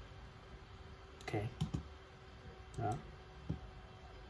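A few sharp clicks of a computer mouse, two in quick succession about one and a half seconds in, then one near three seconds and one a little later.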